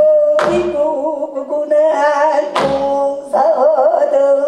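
Gayageum byeongchang: women singing a held, wavering vocal line in Korean traditional style while accompanying themselves on plucked gayageum, with two strong plucked strokes, about half a second in and again past two and a half seconds.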